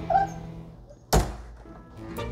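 A Siberian husky gives a brief whine, then about a second in a door shuts with a single loud thunk, over soft background music.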